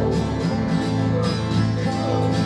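Country-style acoustic band music: guitar and other plucked strings playing an instrumental passage between sung lines.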